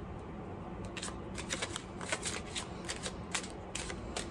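A tarot deck shuffled by hand: a run of quick, irregular card snaps and riffles, starting about a second in.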